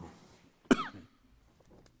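A man coughing once, sharply, close to a microphone, about two thirds of a second in.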